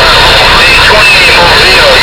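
CB radio speaker putting out loud, distorted static with faint garbled voices wavering through it, as from a strong incoming transmission that holds steady for the whole time.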